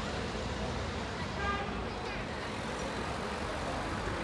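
Street ambience: steady traffic noise from cars on a city road, with faint voices about a second and a half in.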